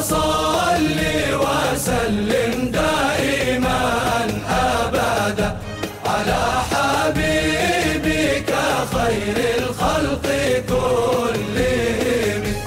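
Male chorus singing a devotional chant (inshad) together, accompanied by frame drums.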